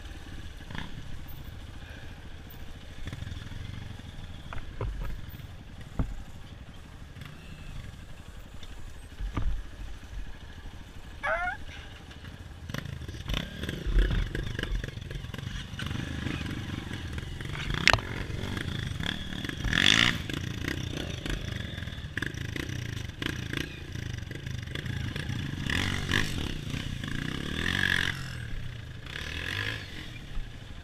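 Honda CRF230 trail bike's single-cylinder four-stroke engine running at low speed, revving up and down more from about halfway, with clatter and several sharp knocks from the bike over rough ground.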